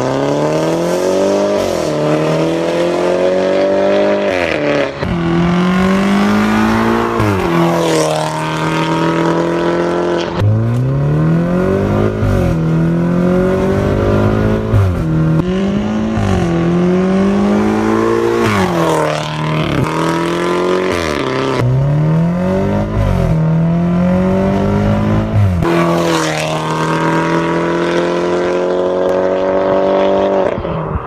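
BMW F30 330i's B48 turbocharged four-cylinder through an RES valved aftermarket exhaust, accelerating hard: the revs climb again and again, each climb cut off by a sharp drop in pitch at a gear change or lift-off.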